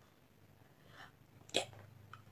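Mostly quiet room tone, then one short, sharp breathy exclamation from a woman, a whispered "yeah", about one and a half seconds in.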